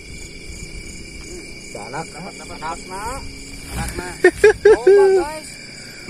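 Night insects such as crickets chirring steadily in several high-pitched tones. From about two seconds in, people's voices talk and exclaim over them.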